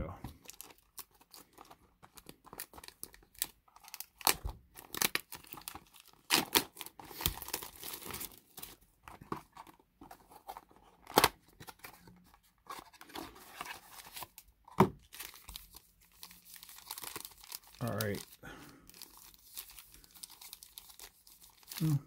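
Plastic shrink wrap being torn and crinkled off a cardboard trading-card box, then the box's cardboard flap being pulled open. The sound is a run of sharp crackles and short tearing rustles, with foil card packs rustling near the end.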